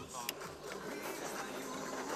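Handheld butane gas torch hissing as it melts cheese along the edges of pizza squares to join them into one pizza, with a sharp click about a third of a second in and faint voices behind.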